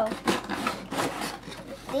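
Cardboard packaging scraping and rubbing as it is worked open by hand, in a run of short, irregular scrapes.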